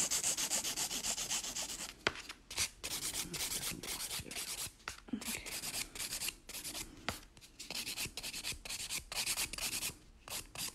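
A hand nail file rubbing back and forth across a gel nail in quick, even strokes, several a second, shaping the sides to a slight taper, with a brief pause about two seconds in.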